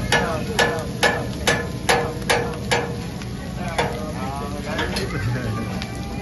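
A hibachi chef's metal spatula strikes in a steady beat, about two ringing clacks a second, and stops about three seconds in. Underneath, the griddle sizzles steadily.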